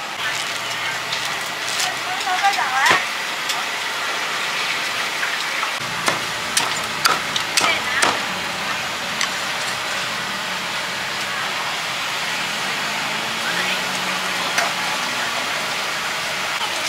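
Busy market ambience with background voices and a steady hiss. A few seconds past the middle come a handful of sharp knocks from a steel cleaver chopping fried chicken on a round wooden chopping block.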